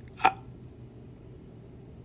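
A man's single brief, sharp vocal sound about a quarter second in, a clipped 'I' or catch in the throat, followed by quiet room tone.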